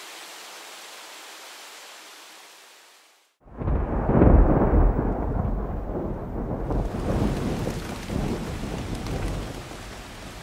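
A faint hiss fades away to silence, then about three and a half seconds in a thunderstorm comes in: a long roll of thunder, loudest just after it starts, over steady rain that runs on to the end.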